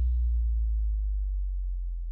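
Last held sub-bass note of an electronic dance track: a deep, steady bass tone fading slowly, with the last higher traces of the music dying away in the first half second.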